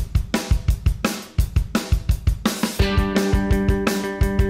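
A rock song starts suddenly with a fast drum-kit beat: kick, snare and cymbals. About three seconds in, steady pitched chords join the drums.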